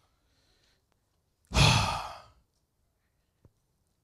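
A man's long sigh, breathed close into a handheld microphone, about a second and a half in and fading out within a second.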